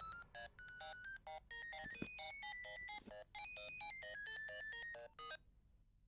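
A mobile phone ringing with an electronic ringtone: a quick melody of short beeping notes that step up and down in pitch. It stops about five seconds in, as the call is answered.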